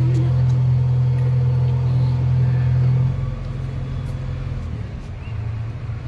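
Steady low engine rumble from digging machinery working in the street, much quieter from about three seconds in.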